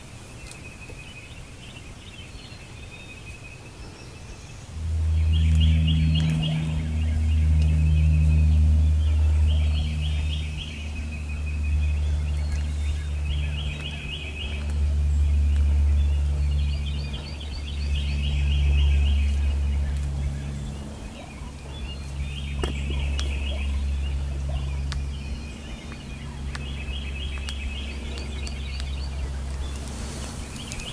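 Strutting wild turkey gobbler drumming: a deep, low hum that sets in about five seconds in and swells and fades. Short rattling calls repeat every couple of seconds above it.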